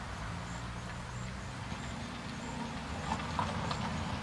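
Quiet outdoor background: a steady low rumble, with a faint high chirp repeating about every two-thirds of a second and a few faint clicks near the end.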